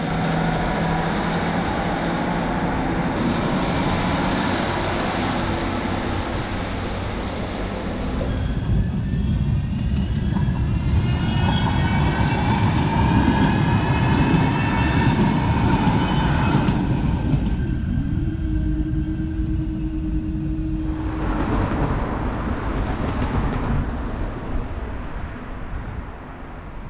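Rail vehicles passing close by: a Northern diesel train running past, then Manchester Metrolink trams crossing the level crossing. Through the middle a whine rises and falls in pitch, and a steady tone comes in briefly near the end.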